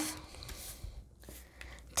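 Faint rustling and a few light ticks of a tarot card being drawn from the deck and handled.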